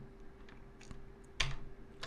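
A few keystrokes on a computer keyboard while editing code, scattered and soft, with one sharper key click about one and a half seconds in.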